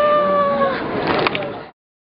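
A high-pitched human voice drawing out a long vowel, sliding up to a slightly higher held note for most of a second, with crowd chatter behind. The sound cuts off abruptly just before the end.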